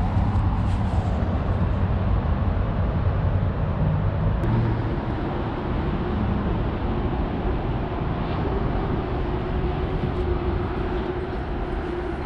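Steady rumble of highway traffic heard outdoors. A steady hum joins about four seconds in.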